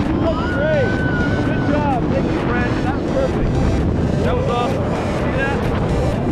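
Wind rushing over the microphone of a camera worn by a tandem skydiver descending under an open parachute: a loud, steady rushing with no break.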